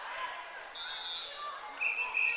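Sneakers squeaking sharply on a hardwood gymnasium floor as players run and stop, with players' voices calling across the hall. One short squeak comes a little before halfway and two more come near the end.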